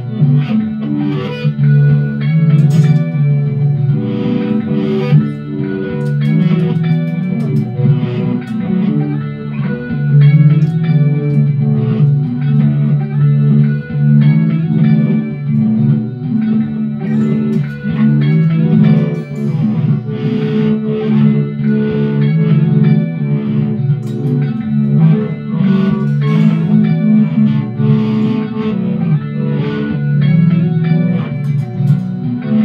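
Mint-green Telecaster-style electric guitar played through a small combo amplifier, a continuous run of sustained notes and chords with no break.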